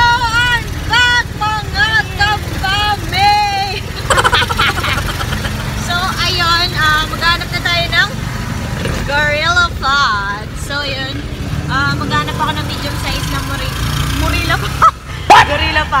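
Steady low rumble of a passenger jeepney's engine heard from inside the cabin, under the women's voices.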